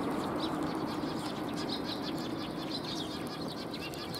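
A flock of Eurasian tree sparrows feeding on the ground, giving many short overlapping chirps, with some wing flutter among them.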